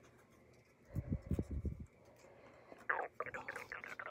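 Soft handling of cardstock and peeled foam-adhesive backing, then quiet whispered muttering near the end.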